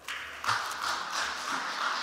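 Scattered hand-clapping from a small group, setting in about half a second in and holding steady.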